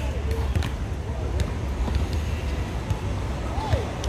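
Outdoor city background: a steady low traffic rumble with indistinct distant voices and a few faint clicks.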